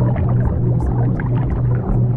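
Subliminal background track: a low hum that pulses on and off a few times a second, the 'delta wave frequency' layer, over a steady wash of noise with faint crackles.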